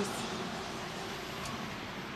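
Steady outdoor background noise with no distinct event, and a faint click about one and a half seconds in.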